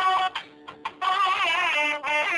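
Background music with a wavering, ornamented vocal-like melody; it drops out briefly just before a second in, then resumes.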